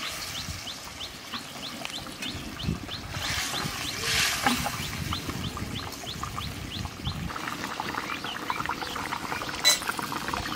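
Koi fish curry bubbling and sizzling in oil in a metal karahi, with a spatula stirring through it; from about seven seconds in a dense crackle of small pops takes over. A high chirp repeats about two or three times a second in the background through the first half.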